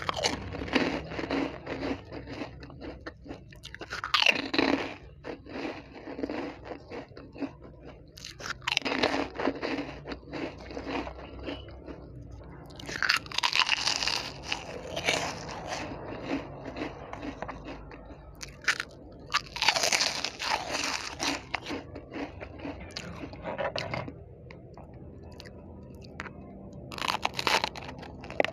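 Crunching and chewing of crispy snacks (ridged potato chips, crispy tubes and rolled wafers), with a loud spell of crunchy bites roughly every five seconds and softer chewing in between.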